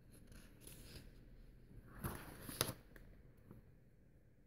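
Paper page of a picture book being turned by hand, a soft rustle with two brief louder swishes about two seconds in and again shortly after.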